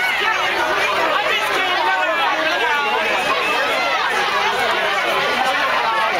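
Chatter of a crowd: many voices talking over one another close by, at a steady level, with no music standing out.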